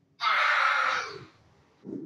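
A person's loud, breathy vocal burst lasting about a second, ending on a short falling tone, followed by quieter low sounds near the end.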